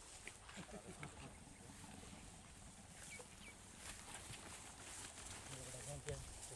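Faint open-field ambience with low, murmured voices and a few short, high chirps.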